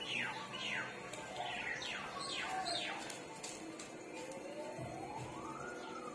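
A bird calling in a quick run of about six descending chirps, followed by a separate long tone that slowly rises in pitch and begins to fall near the end.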